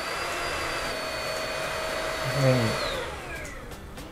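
Xiaomi Mi Handheld Vacuum Cleaner 1C running on its lowest suction level with a steady high motor whine. About three seconds in, the motor is switched off and the whine falls in pitch as it winds down.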